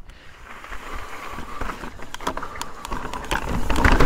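Mountain bike rolling down a rocky dirt trail: tyres crunching over dirt and stones, with scattered sharp clicks and rattles from the bike. It gets louder as the bike picks up speed near the end.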